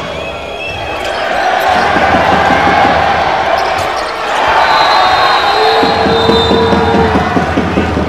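Basketball game audio in an arena: the ball bouncing and players moving on the hardwood, under crowd noise that swells twice.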